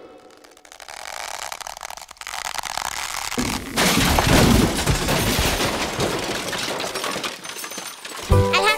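Applause with cheering, building up over the first few seconds and holding dense and steady.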